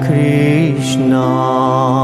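A man singing a slow devotional Hindu chant (bhajan) with a wavering vibrato on held notes, over a steady low instrumental drone. There is a brief 'sh' sound just under a second in.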